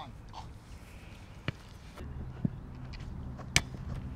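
Quiet outdoor background with three sharp clicks about a second apart, the last the loudest, and a low steady hum that comes in about halfway.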